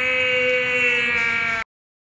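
A man's long, drawn-out cry of pain on one held pitch, cut off suddenly about a second and a half in.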